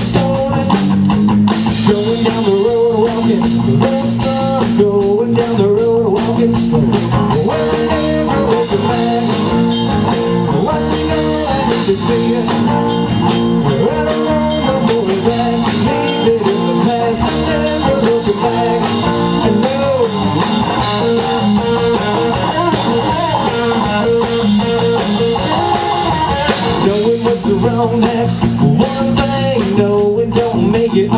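Live blues-rock trio playing an instrumental passage: electric guitar lead lines with bent notes over bass guitar and drum kit.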